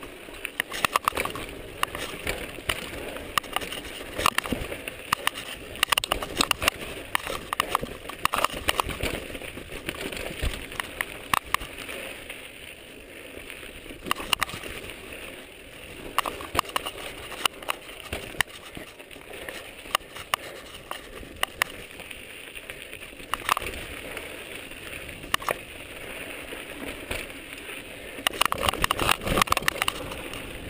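Mountain bike ridden down rocky singletrack: tyres rolling and crunching over rock and gravel, with frequent sharp knocks and rattles from the bike as it strikes rocks, thickest near the end.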